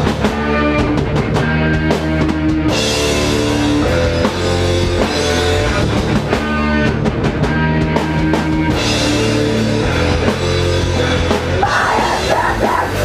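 Live hardcore punk band playing loud: distorted electric guitar and bass over a pounding drum kit, with crashing cymbals in two stretches, around three seconds in and again around nine seconds in.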